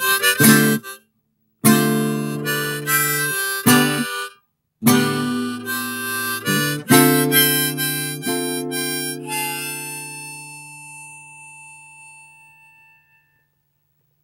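Harmonica in a neck rack and acoustic guitar playing a closing phrase broken by two short pauses, then the last chord rings and fades out a little before the end.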